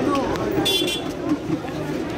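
Busy street background of people talking, with a brief high-pitched vehicle horn toot well under a second in.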